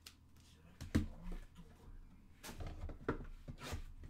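A cardboard trading-card hobby box and cards being handled on a tabletop: a sharp knock about a second in, then a run of short taps and scrapes.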